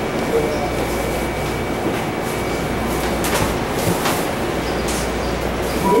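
Steady noise and low hum inside a MARTA rail car stopped at a station, with faint passenger voices and a few short clatters a little past the middle.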